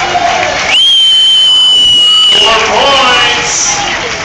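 A loud, high-pitched whistle blown once and held for about a second and a half, sliding up in pitch as it starts.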